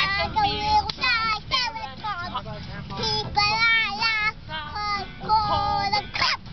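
A toddler singing a children's song, with a woman singing along. A low, steady car rumble sits underneath.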